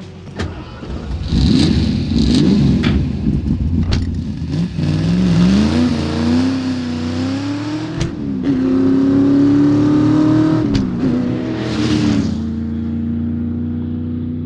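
1965 Shelby GT350's 289 V8 running and accelerating through the gears: the pitch rises, falls sharply at a gear change about eight seconds in, holds, and falls again at another shift near eleven seconds. A few sharp clicks and knocks come through early on.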